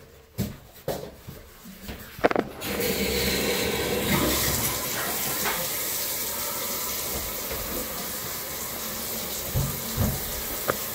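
A few knocks and clicks, then about three seconds in a bathtub tap is turned on and water runs steadily from it into the tub.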